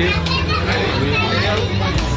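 Crowd chatter of many people talking at once, with children's voices among them, over a steady low hum.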